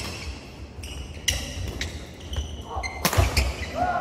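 Badminton doubles rally: a few sharp racket strikes on the shuttlecock, squeaking shoes and thudding footsteps on a wooden court floor, in a large echoing hall. A voice calls out near the end as play stops.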